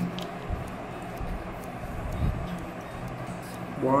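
Steady background noise with a few faint small clicks as hard plastic model parts and a thin metal measuring template are handled against each other. A man's voice comes in right at the end.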